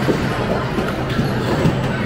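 Busy arcade din: game music from the machines mixed with background chatter.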